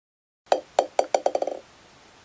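A small hard ball bouncing, about eight bounces coming faster and fainter as it settles to rest, each with a bright ringing click. A faint hiss follows.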